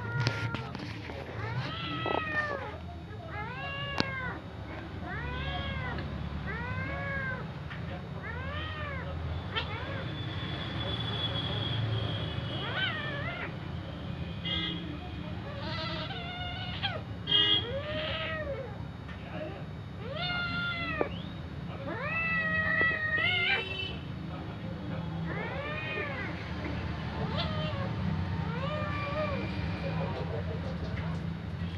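Cat meowing over and over in short, arched cries about a second apart while two cats scuffle together.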